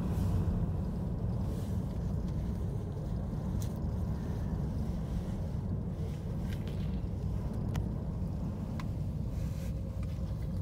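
Wind buffeting a descending gondola cabin, heard from inside as a steady low rumble, with a few faint clicks.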